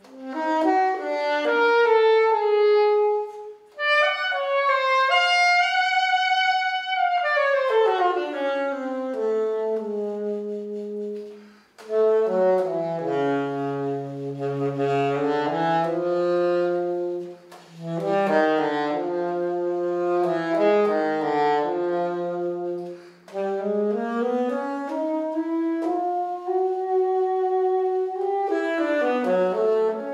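Saxophone playing a solo melodic line in phrases, with smooth pitch slides down and up between notes and brief breaks between phrases.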